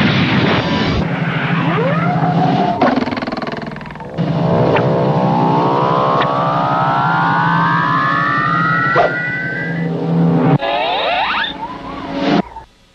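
Cartoon sound effects: a noisy crash at the start, then a long rising whine with many overtones that climbs for about six seconds and tops out high, like a motor revving up, followed by a short burst of rising sweeps near the end.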